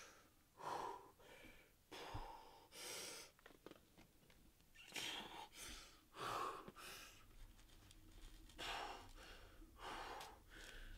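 A climber's heavy breathing while pulling through a boulder problem: short, hard breaths and exhalations at irregular spacing, roughly one a second.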